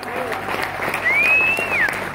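Concert audience applauding and cheering as a rock song ends, with one whistle about halfway through that rises, holds and then falls away.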